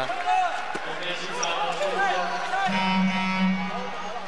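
Basketball arena sound during a stoppage in play: voices in the hall and a steady low tone that swells about two and a half seconds in and holds for about a second.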